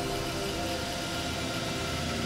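Steady electronic drone of several held tones, easing slightly in level.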